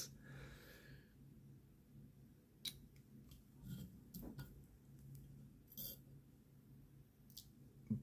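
Near silence with a handful of faint, separate clicks and taps from the small brass and Ultem parts of a fidget toy being handled over a metal plate.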